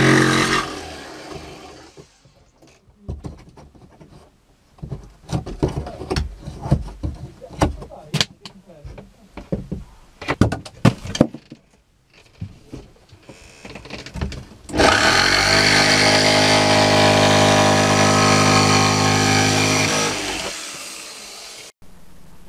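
Scattered knocks and clicks, then an electric power tool motor runs loud and steady for about five seconds and winds down.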